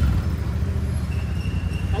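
Royal Enfield Super Meteor 650's parallel-twin engine running steadily at low revs.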